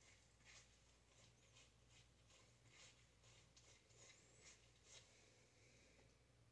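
Near silence, with faint soft strokes about twice a second: a tint brush spreading bleach through wet hair on a mannequin head.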